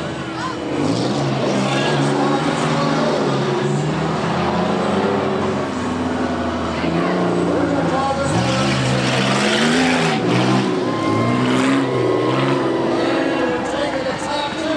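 Engines of several figure-8 race cars on a dirt track, revving up and easing off again and again as the cars accelerate and slow for the turns.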